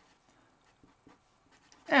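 Felt-tip marker writing on paper, a few faint short scratches and ticks, before a man's voice resumes near the end.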